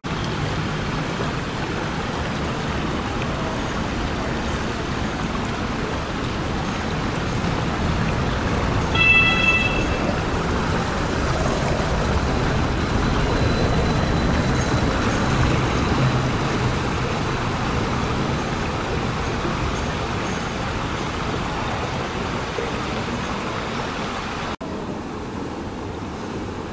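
Hess Swisstrolley 5 trolleybus passing close on a cobbled street, over a steady rumble of tyres and street traffic. A brief tooted tone sounds about nine seconds in, and a faint high whine follows a few seconds later.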